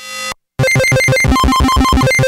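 Novation Bass Station II analogue monosynth playing a preset: a short note swells up and stops, then after a brief gap comes a fast run of short staccato notes, about eight a second, jumping between a few pitches.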